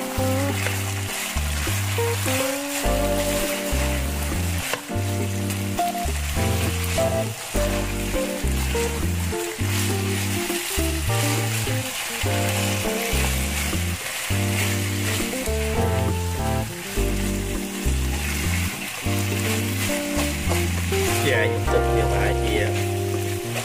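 Pork cartilage and sliced lemongrass sizzling steadily as they are stir-fried in a wok, with the spatula stirring and turning them, over music with a steady, repeating bass beat.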